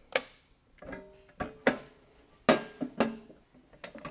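Half a dozen sharp clicks and metallic knocks spread over a few seconds, some with a brief ringing tone, as the air handler's low-voltage control power is switched on and the equipment is handled.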